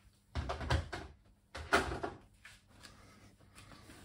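Handling noises: a few knocks and scrapes as small objects are set down and a box is fetched. The loudest comes about a second and a half in.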